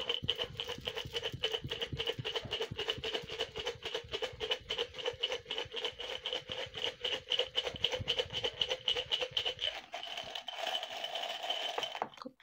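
Small rolled paper slips rattling inside a glass jar as it is shaken, a fast continuous rattle with a faint ring from the glass. The rattle thins out near the end.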